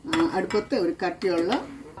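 A woman speaking, with a steel saucepan being handled and clinking.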